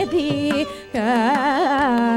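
Carnatic classical music: a woman's voice sings a heavily ornamented melodic line, with violin accompaniment and mridangam strokes. The sound drops briefly just before a second in, then the line comes back in.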